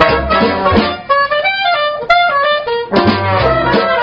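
Dixieland jazz band playing live: the full band with a pulsing bass beat, then about a second in the rhythm section drops out and a single wind instrument carries the tune alone, and the whole band comes back in about three seconds in.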